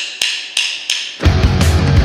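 A drummer's count-in: three quick, bright strikes about a third of a second apart. Just over a second in, the full punk rock band comes in loud, with electric guitar, bass guitar and drum kit.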